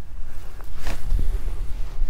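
A fishing rod being cast: a brief swish of rod and line about a second in, over a steady low rumble.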